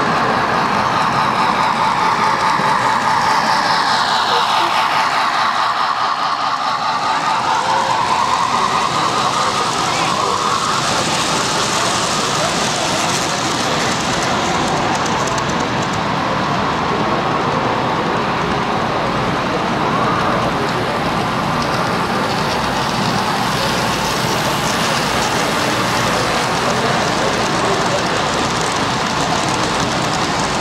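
Steady din of a crowded exhibition hall, many voices mixed with model trains running on the layout. Near the end, a model freight train rolls past close by.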